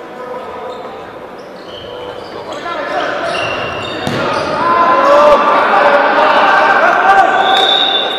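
Indoor futsal play in a reverberant sports hall: sport shoes squeaking on the hall floor, a sharp ball strike about four seconds in, then players calling out loudly through the second half.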